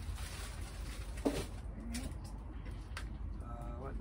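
Brief spoken words ("all right", "uh, what") over a steady low hum, with a single sharp knock about a second in.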